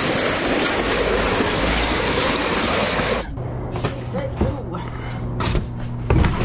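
A plastic storage tote being pulled and slid out from among other bins: a loud scraping rumble for about three seconds that stops suddenly. A steady low hum and a few light knocks follow.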